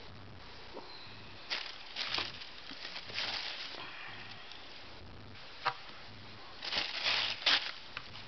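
Tissue paper rustling and crinkling in a cardboard shoe box, in several short bursts, the loudest near the end. There is a single sharp click a little past halfway.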